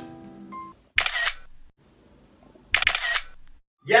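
iPhone camera shutter sound, heard twice: about a second in and again near three seconds.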